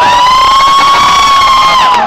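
A singer's amplified voice holding one long, high note that rises slightly and cuts off just before the end, over a cheering crowd.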